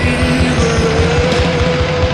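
Post-punk rock song playing: a fast, driving beat under one long held note.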